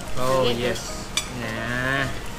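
A man's voice drawing out two long, low, held vocal sounds, with a brief click of cutlery between them.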